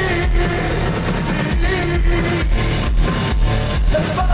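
Rock band playing live: electric guitars, bass guitar, keyboard and drum kit, with a steady beat of about two drum hits a second.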